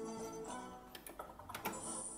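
Electronic jingle from a Merkur El Torero slot machine, signalling that scatter symbols have landed and ten free games are awarded. Steady tones for about half a second, then sparser sound with a few sharp clicks.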